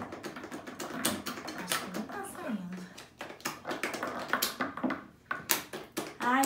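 Irregular sharp plastic clicks and taps as a lotion pump bottle is worked and a stirring utensil knocks in a glass mixing bowl, with a brief murmured voice partway through.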